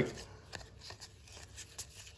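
Faint rustling and a few light ticks of a stack of cardboard trading cards being fanned and squared in the hands.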